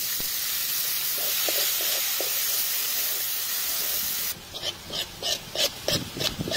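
Minced garlic sizzling loudly in hot oil in a pan. About four seconds in, the steady sizzle drops away into a run of short scraping, sizzling strokes, about three a second, as a spatula stirs the frying garlic.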